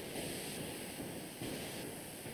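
Faint, steady hiss of background noise from an open microphone or call line, with no speech.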